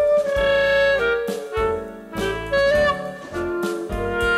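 Orchestra playing a lively klezmer-style dance tune: a melody line moving over regular low beats.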